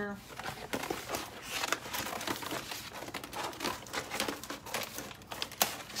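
A thin craft sheet crinkling and rustling as it is handled, with many small irregular crackles.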